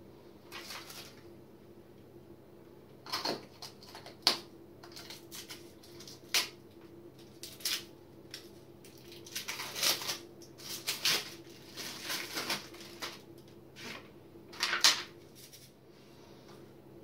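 Plastic water-filter cartridges being handled: irregular clicks, knocks and rustling, over a faint steady hum.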